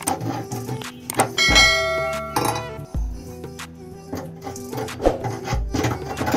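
Background music with a steady beat, and a ringing bell chime about one and a half seconds in.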